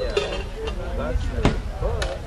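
Indistinct voices of people talking, over a steady low rumble. A single sharp knock comes about three-quarters of the way through.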